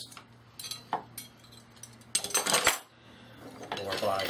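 Metal hand tools clinking and clattering against one another and the table as they are handled, a few light clicks followed by a longer rattle about two seconds in.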